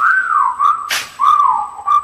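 Whistled melody opening a hip-hop track: a run of short notes that swoop down in pitch, over sparse drum hits about once a second.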